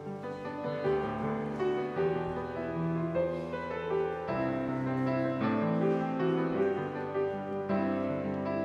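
Piano playing a hymn introduction in chords, beginning just before this moment.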